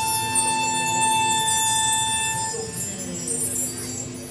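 Concert band playing a soft passage: a single high note held for about two and a half seconds over quiet accompaniment, then the music dies down.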